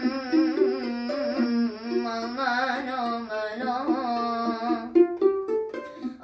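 Violin bowed in a slow, ornamented Turkish arabesk melody with wide vibrato, ending in a run of short, quick notes about five seconds in.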